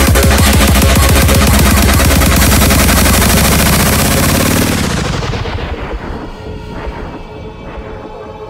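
Sped-up happy hardcore track driven by a loud, rapid run of drum hits. From about four and a half seconds a falling filter sweep cuts away the highs and the music drops into a quieter, sparser passage.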